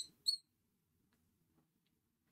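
A marker squeaking briefly on a glass light board as a structure is drawn, with short high squeaks right at the start and about a quarter of a second in.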